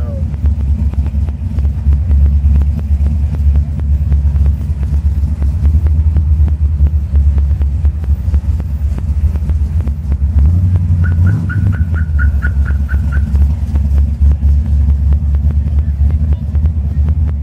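Engine of a hot-rodded 1967 Oldsmobile convertible running with a loud, steady low rumble, heard from inside the open car as it cruises slowly; the rumble swells briefly about ten seconds in. Near the middle comes a quick run of short high beeps, about four a second.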